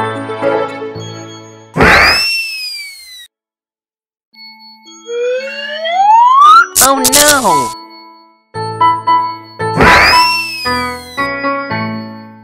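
Cartoon sound effects for heads being swapped onto a body. There is a whoosh with a rising-then-falling whistle about two seconds in and again near ten seconds, and a slide-whistle glide rising around five seconds. A loud burst with a falling, voice-like sound comes about seven seconds in, and ringing chime tones follow.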